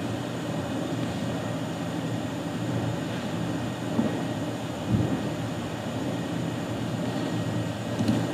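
Steady low background hum, with two soft knocks about four and five seconds in.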